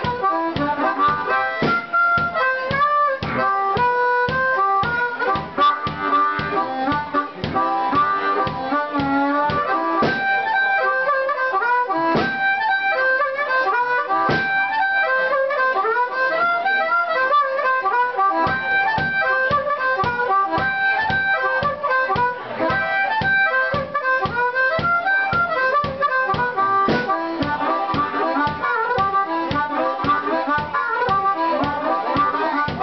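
Amplified harmonica played cupped against a microphone, a bending, wailing melody over a bass drum kicked in a steady beat. The drum drops out for several seconds about a third of the way in, leaving a couple of lone hits, then comes back.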